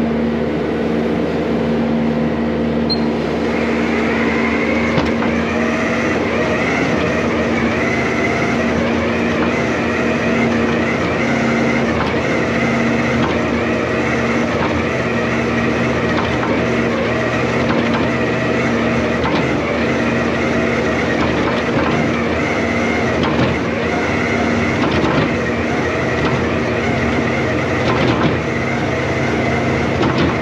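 A farm machine's diesel engine running steadily while a side-discharge bedding spreader works, spilling bedding onto the stalls. A higher whine joins about three seconds in and carries on.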